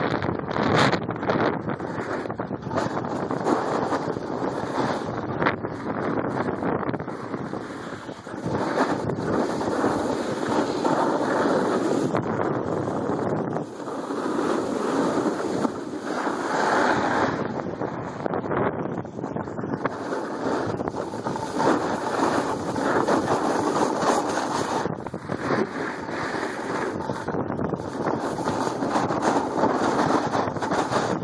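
Wind rushing over the microphone of a camera carried by a downhill skier, mixed with the scrape and hiss of skis on packed snow. The noise swells and eases every few seconds.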